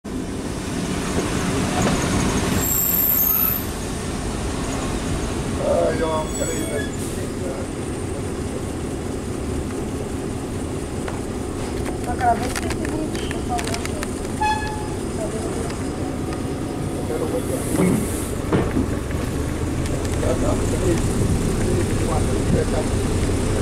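Passenger train running, heard from an open window on board: a steady rumble of wheels and running gear, a little louder in the first few seconds.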